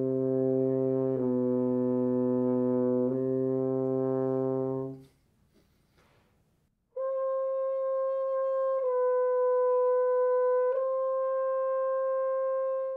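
French horn sounding a long-held low note, then, after about two seconds of rest, a long-held note two octaves higher. Both notes are started with breath attacks rather than the tongue, and each shifts slightly in pitch twice as it is held.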